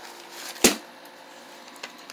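A single short, sharp tap or knock about two-thirds of a second in, over quiet room noise, with a much fainter tick near the end.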